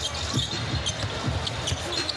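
A basketball being dribbled on a hardwood court: about four low thumps, roughly one every half second, over steady arena crowd noise.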